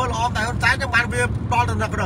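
A man talking continuously over a steady low rumble inside a car cabin.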